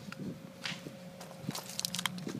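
Faint handling sounds as a magazine is fitted into the grip of a Ruger 22/45 Mark III .22 pistol: a brief scuffing rustle a little before the middle, then a few small clicks in the second half.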